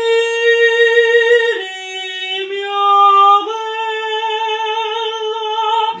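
A voice student singing slow, sustained legato notes without accompaniment: a long held note, a smooth step down about a second and a half in, and back up to the first pitch about two seconds later.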